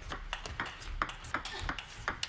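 Table tennis rally: a celluloid-type ball clicking sharply off the table and the players' rubber-faced paddles, about three or four hits a second.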